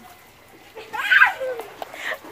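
A woman's short cry about a second in, its pitch falling away, over the steady hiss of water spraying from an outdoor shower head.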